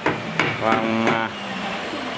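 A man's voice holding a long, level 'và' in Vietnamese, with two sharp knocks at the start and about half a second in.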